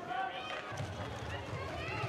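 Handball players shouting short calls to each other during play, over running footsteps on the court floor.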